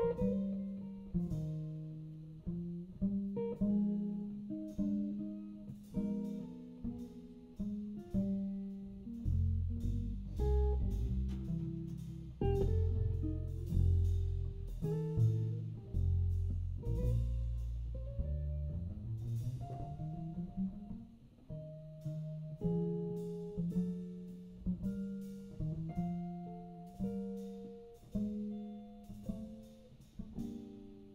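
Live jazz trio: hollow-body archtop guitar playing melody lines and chords over plucked upright double bass and light drum-kit cymbal and drum strokes. The low bass notes come forward through the middle of the passage.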